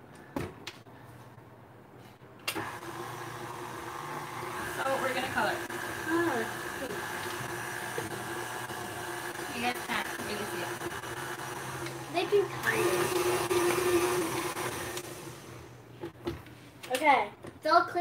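KitchenAid tilt-head stand mixer motor running steadily while its beater mixes food colouring into a bowl of cream cheese buttercream. It starts about two and a half seconds in, grows louder a few seconds before it stops, and cuts off about three seconds before the end. A couple of clicks come just before the motor starts.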